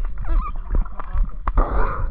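Muffled underwater sound through a camera housing held under a lake's surface: a steady low rumble of water moving against the housing, with scattered clicks and knocks. A brief wavering, warbling tone comes near the start.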